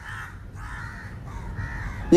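A bird calling several times, each call a short rasping burst.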